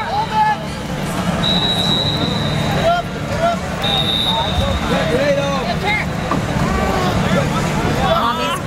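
Crowd chatter in a large indoor sports hall, many overlapping voices over a low steady rumble. Twice a long, steady, high whistle-like tone sounds over it: once about a second and a half in, and again for about two seconds from near the four-second mark.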